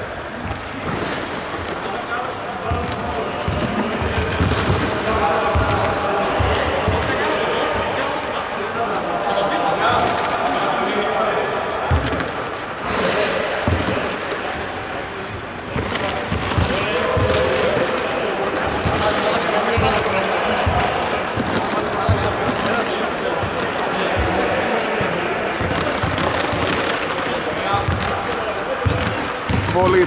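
A basketball bouncing on a hardwood court at irregular intervals, under several men's voices talking in a large sports hall.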